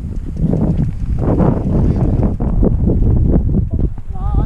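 Wind rumbling loudly on an action camera's microphone, mixed with irregular crunching steps on a dirt and gravel trail while a mountain bike is pushed uphill.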